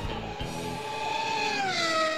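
A single held note ending the intro music, sliding down in pitch about a second and a half in and then holding at the lower pitch, after the guitar strumming stops.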